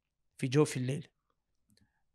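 A man's voice saying a short word or two about half a second in, then near silence broken by a few faint clicks near the end.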